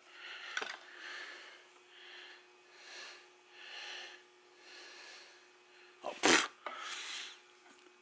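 Soft rubbing strokes, about one a second, as fingers work rubber cement onto a tire-plug strip threaded in the insertion needle, over a faint steady hum. A short sharp noise about six seconds in.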